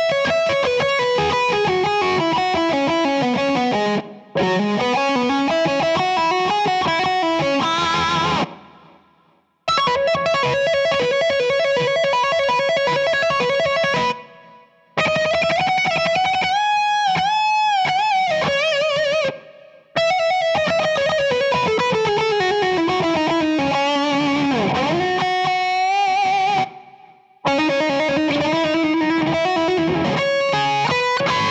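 Distorted electric guitar tuned to drop C-sharp, playing a metal guitar solo slowly as single-note phrases broken by short pauses. A wide vibrato comes in the middle and a quick pitch dip near the end.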